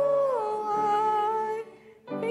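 Hymn singing: a long held note that steps down to a lower pitch about half a second in and holds, then breaks off near the end, a pause before the next phrase.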